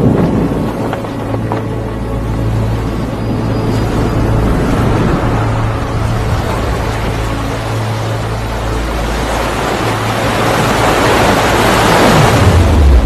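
Wind buffeting the microphone over the steady rush of cyclone-driven surf breaking against a breakwater, swelling louder near the end as a big wave crashes.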